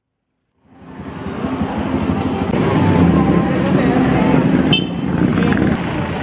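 Street traffic: car and motorcycle engines running and passing, with people's voices mixed in, fading in after a moment of silence.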